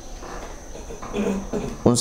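A pause in speech filled by a faint, steady high-pitched trill over a low hum. A man's voice murmurs softly about a second in, and speech starts again at the very end.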